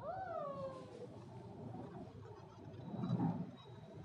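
Alexandrine parakeet giving a short whining call at the start, about a second long, that rises briefly and then slides down in pitch. About three seconds in comes a louder, low, muffled bump or rustle.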